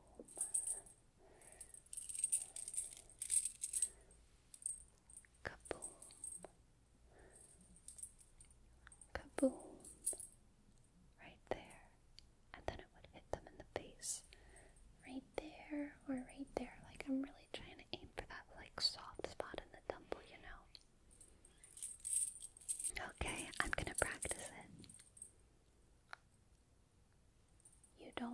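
Metallic jingling and rattling in irregular bursts as a doubled-up object is handled and swung close to the microphone, loudest about two to four seconds in and again near the end.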